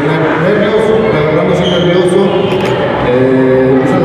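A man speaking into a microphone, amplified through a PA.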